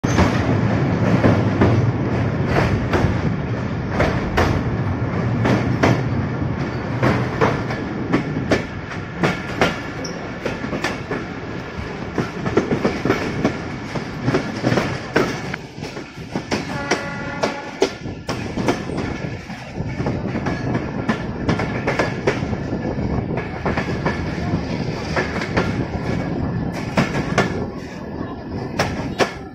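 A moving passenger train heard from an open coach doorway: wheels clattering over rail joints above a steady running rumble, which is heavier in the first few seconds as the train crosses a bridge. A short high tone sounds for about a second and a half a little past the middle.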